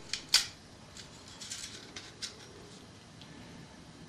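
Small clicks and taps of metal parts as the spring-loaded end cap is pressed back onto a Remington 870 shotgun's magazine tube. Two sharp clicks come in the first half second, then a few faint ticks.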